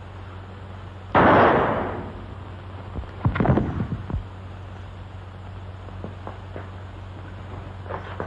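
Gunfire: one sudden loud pistol shot with a ringing tail, then about two seconds later a quick run of sharp cracks, and a few faint ticks after. A steady low hum runs underneath.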